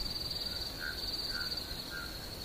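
Crickets trilling steadily at a high pitch, with a few faint short notes lower down.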